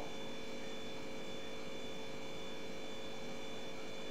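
Steady background hiss with a faint constant electrical hum of a few steady tones, unchanging throughout: the room tone of a voice recording between sentences.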